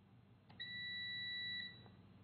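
Pure sine wave inverter charger giving a single high beep about a second long, with a faint click just before it and another just after. The beep comes as the inverter transfers from battery back to utility power.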